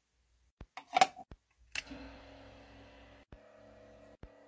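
A few sharp clicks, the loudest about a second in, then a sensory bubble-tube lamp's air pump starts and runs with a faint, steady hum and a light hiss of bubbling water.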